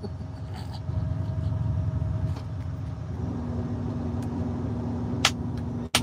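Truck engine running, heard from inside the cab as a steady low rumble with a faint hum that drops to a lower pitch about three seconds in. A single short click near the end.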